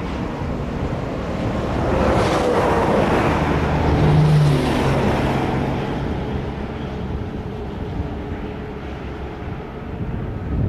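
Steady road noise of a car driving, swelling louder for a few seconds near the middle.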